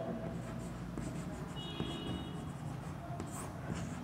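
Chalk writing on a chalkboard: faint scratching and light tapping as a word is written out.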